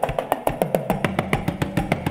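Live drum solo on a large kit of tom-toms and cymbals: rapid, evenly spaced strokes, several a second, with the low drum notes falling in pitch after each hit.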